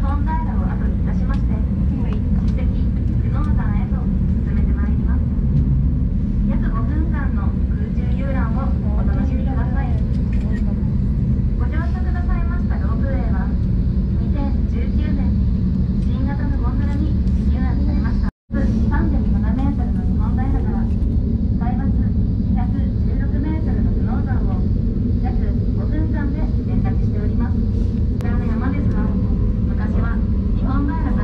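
A steady low rumble inside a moving ropeway gondola cabin, with people's voices talking over it throughout. The sound cuts out completely for a moment about two-thirds of the way through.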